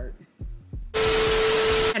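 A burst of loud static hiss with a steady hum tone running through it. It lasts about a second and cuts in and out abruptly.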